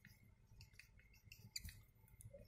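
Faint squeaks and scratches of a felt-tip marker writing on a plastic-covered sheet, a few short strokes, slightly louder about one and a half seconds in.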